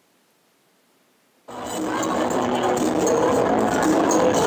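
Near silence, then about one and a half seconds in, the soundtrack of a sampled club video cuts in suddenly and loud: disco music with crowd noise.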